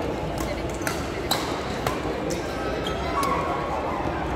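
Badminton rackets hitting a shuttlecock: a rally of sharp clicks at irregular spacing through the first three seconds, with a short squeak about three seconds in, over the echoing murmur of voices in a large sports hall.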